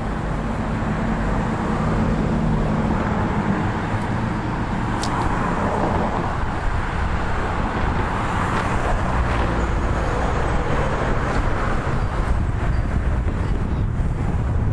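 Road traffic on a highway: a steady rush of passing cars with low engine and tyre rumble.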